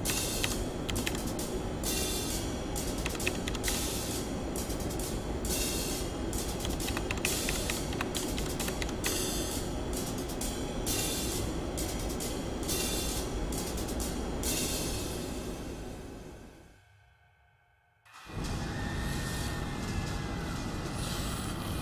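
Horror-film soundtrack: a dense steady drone with rapid, irregular bursts of hissing, static-like noise over it. It fades away about sixteen seconds in to near silence, then cuts back in abruptly about two seconds later.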